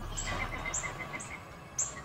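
Faint outdoor chirping: short high chirps about twice a second over a faint, fast-pulsing trill.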